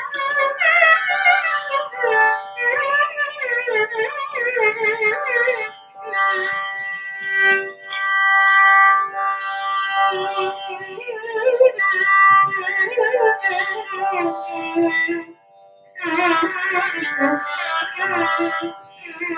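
Carnatic violin playing a gliding, ornamented melodic passage alone, with a short break about 15 seconds in.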